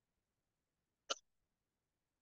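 Near silence, broken once about a second in by a single short, sharp click.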